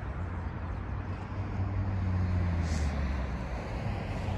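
Low engine rumble with a steady deep hum, swelling over about two seconds and then easing off, with a brief hiss near the end.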